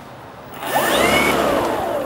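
Snow Joe iON 40V hybrid electric snow thrower's motor and auger starting after a slight delay, then spinning up with a quickly rising whine. Near the end it begins to wind down.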